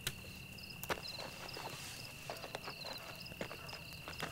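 Crickets chirping steadily, with a few soft clicks and knocks, the sharpest near the start and about a second in.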